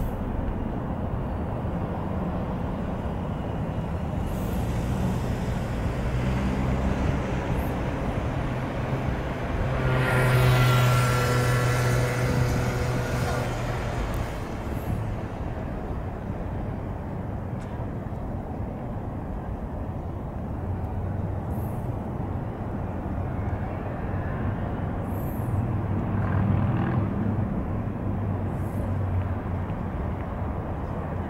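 Distant city traffic, a steady low rumble, with one vehicle passing louder from about ten to fourteen seconds in, its engine whine sliding slightly down in pitch as it goes by.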